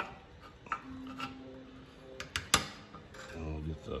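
Light metal clicks and clinks of small engine parts being handled as the carburetor linkage and governor spring are hooked back up, with one sharp click about two and a half seconds in.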